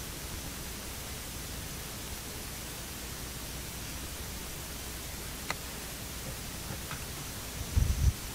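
Steady open-air background hiss with no voices, a couple of faint clicks past the middle, and a short low thump near the end.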